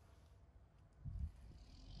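Quiet outdoor background: a faint low rumble, with a brief low bump about a second in.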